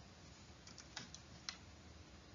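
A few faint sharp clicks, about five in under a second, the loudest about a second and a half in, over a low steady hum.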